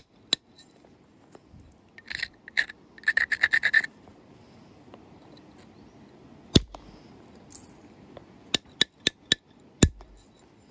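Flint biface edge being abraded with quick rubbing strokes, followed by sharp clicks of an antler billet striking the flint during percussion flaking: one at about six and a half seconds, a quick run of four light ones, and a heavier one near the end.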